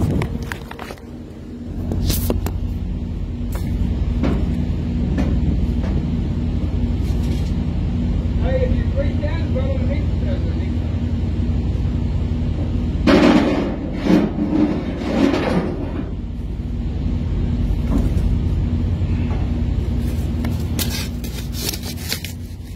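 Steady low rumble of an idling diesel truck engine, with scattered knocks and clicks from the strap and cargo work and a few muffled voices partway through.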